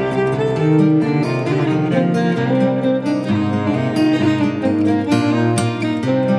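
Instrumental acoustic folk music on plucked strings, guitar among them, playing steadily with no voice.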